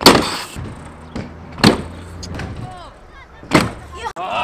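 Freestyle scooter landing hard at the start with a sharp clack, then its wheels rolling over concrete in a low rumble, with two more sharp knocks about a second and a half in and near the end.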